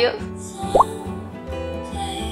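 Background music with a single short rising 'plop' sound effect, a quick upward glide in pitch a little under a second in, which is the loudest moment.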